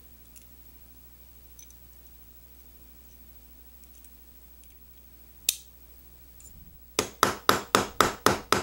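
Small metal parts being handled with faint ticks and one sharp click about five and a half seconds in. Near the end comes a run of quick, sharp taps, about four a second, from a small white-faced gunsmith's hammer striking a Beretta PX4 Storm's slide as parts are tapped into place.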